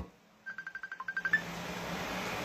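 A quick run of about a dozen short, high electronic beeps, like a phone's key tones, with one lower beep in the middle, after the singing breaks off. A faint steady hum follows.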